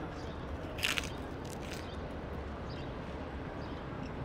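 A person chewing a mouthful of rice and crackers, with one short crunch about a second in and a few faint mouth clicks after, over a steady low background hum.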